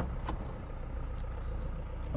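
Low, steady rumble of a vehicle's engine and running gear, heard from inside its cabin while it drives.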